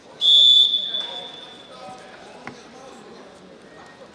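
Referee's whistle blown once: a single loud, high-pitched blast of about half a second that rings on in the hall, signalling the wrestlers to resume the bout.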